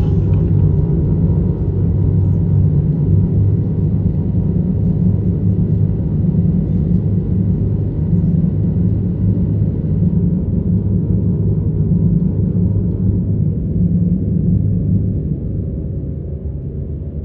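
Haunted-house Halloween decoration with synchronized lights and sounds playing its spooky sound track: a steady low rumble with eerie music, getting somewhat quieter near the end.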